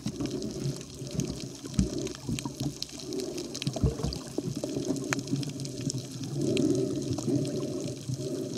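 Water sloshing and churning around a snorkeller's camera, heard muffled with most of the sound low down, with scattered small clicks throughout.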